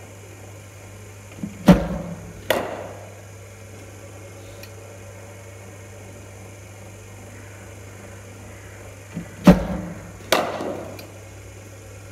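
A cricket bowling machine firing two deliveries, each a sharp, loud thump followed under a second later by a crack as the ball reaches the batsman, echoing in the indoor hall.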